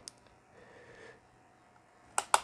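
Near silence: room tone, with a faint brief sound about half a second to a second in.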